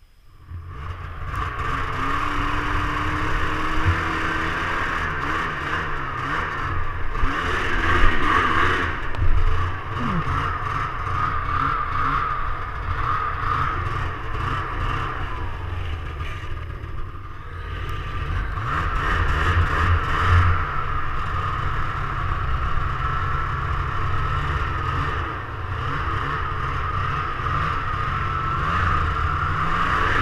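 Snowmobile engine running under way through snow, building up within the first second or so as it pulls away, with a few louder surges, plus heavy wind rumble on the microphone and clatter.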